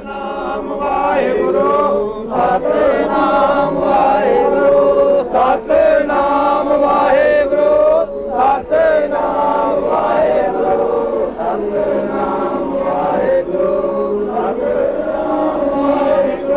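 A group of men chanting together in a steady, continuous sung melody, as in Sikh devotional chanting.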